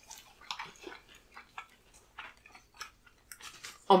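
Close-miked eating sounds: soft, irregular chewing, lip smacks and small wet clicks from people eating spaghetti and fried plantain.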